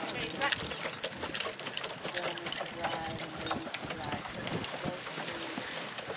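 People talking nearby, unclear, with the hoofbeats of a horse pulling a two-wheeled driving cart along the rail and many irregular sharp clicks.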